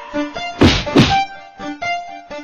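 Two heavy whacks, about a third of a second apart, over sparse notes of background music.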